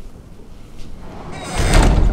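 A rushing whoosh with a deep rumble, swelling about one and a half seconds in and peaking near the end.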